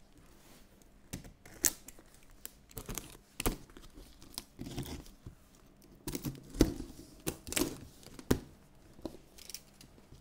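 Packing tape being torn off a cardboard shipping box by hand as it is opened: a series of short, irregular ripping and crackling sounds.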